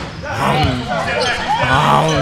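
Basketball bouncing on a hardwood gym floor during a game, with players' shouts and calls echoing in the large hall.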